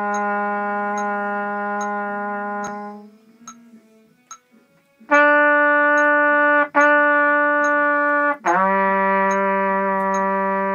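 Trumpet playing long tones from a beginner exercise: a held low note fades out about three seconds in, and after a short breath two higher notes follow with a brief break between them, then a lower held note about eight and a half seconds in. A faint steady click, about every two-thirds of a second, keeps time underneath.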